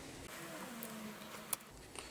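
Faint handling of small plastic and metal RC model-kit parts as a suspension rocker is pushed over its pivot post, with one sharp small click about one and a half seconds in.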